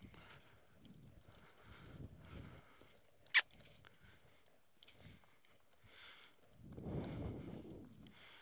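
Soft hoofbeats of a saddled horse moving around a dirt round pen, with one sharp click about three and a half seconds in and a louder rush of noise near the end.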